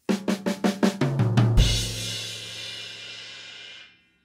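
Drum kit: a quick run of sixteenth notes on the snare drum rolls straight into a short fill that steps down in pitch across the toms. About a second and a half in it lands on a cymbal crash with the bass drum, and the cymbal rings on until it is cut off near the end.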